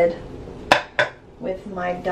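Two sharp clinks about a third of a second apart, a hard object knocked or set down against a hard surface, each with a brief ring.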